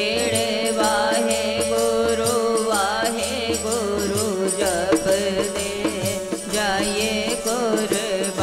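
Sikh kirtan: a devotional hymn sung with a wavering, ornamented voice over a steady harmonium drone, with repeated hand-drum strokes.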